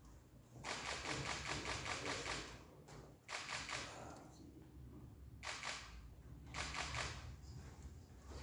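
Camera shutters firing in rapid bursts as photographers take a group photo: a long burst of about two seconds, then three shorter bursts.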